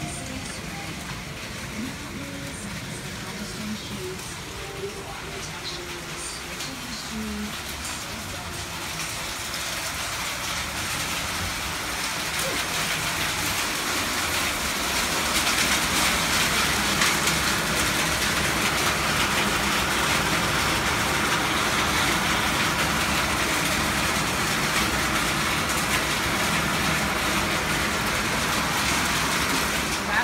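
Thunderstorm rain falling, building from a moderate patter to a heavy, loud downpour over the first half and then staying steady.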